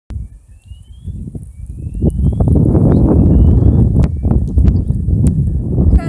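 Wind buffeting the microphone outdoors, a heavy low rumble that builds louder after about two seconds, with scattered knocks and a few faint rising whistled tones.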